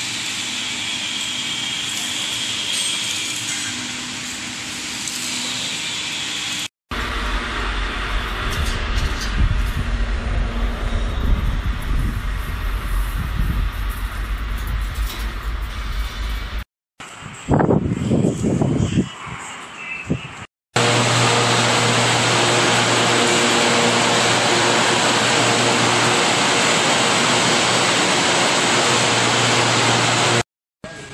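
Several short clips joined by abrupt cuts. First comes steady workshop noise, then a stretch of heavy low rumble, then a few seconds of loud irregular sound. Last, for about ten seconds, a running food-processing fryer and conveyor line gives a steady, even mechanical hum.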